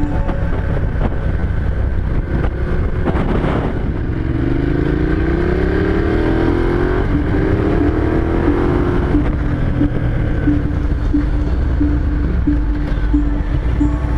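On-board motorcycle engine with road and wind noise, accelerating. The pitch rises for about three seconds, a gear change comes about seven seconds in, and then it rises again briefly.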